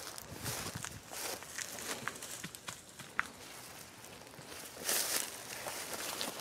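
Footsteps and rustling in dry grass and brush, irregular and crackly, with a louder rustle about five seconds in.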